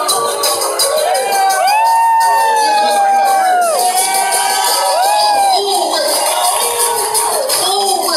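Live music played loud, with a high voice singing long, arching held notes over a steady beat, and a crowd cheering.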